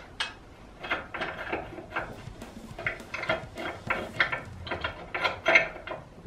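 Socket ratchet wrench clicking in short, irregular strokes as a fastener is worked loose at the rear axle of a Derbi 50cc motorbike.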